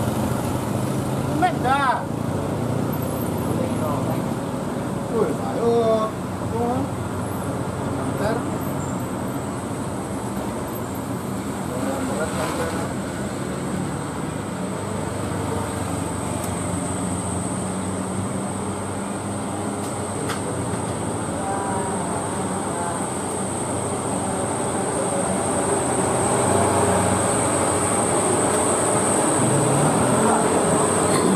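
Road traffic on a steep mountain climb: vehicle engines running under load as cars, motorbikes and a light truck hauling a road roller pass, with a steady high whine throughout. The traffic grows louder over the last few seconds.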